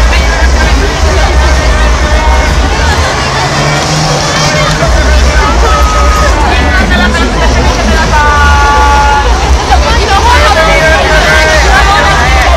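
Street crowd babble: many voices talking and calling at once, with music in the background. A heavy low rumble runs under it, dropping out briefly about four seconds in.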